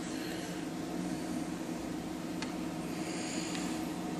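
Steady low hum and room noise with one faint click a little past the middle.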